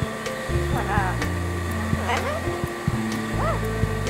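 Background music with sustained low chords changing every second or so, over which a green Amazon parrot makes short voice-like calls about a second in, around two seconds, and near the end.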